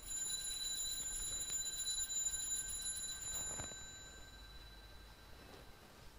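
Altar bells rung at the elevation of the host during the consecration: a bright, high, shimmering ringing that stops about four seconds in.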